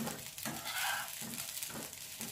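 Slotted spatula scraping and pushing rice around a nonstick frying pan in repeated strokes, over a soft sizzle of the rice frying.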